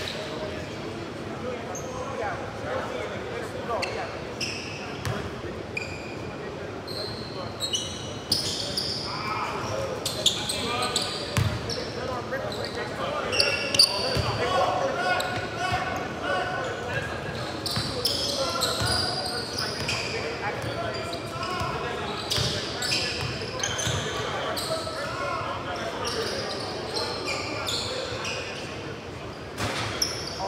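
Basketball game in a gymnasium: a ball bouncing on the hardwood court and players' voices calling out, echoing in the large hall.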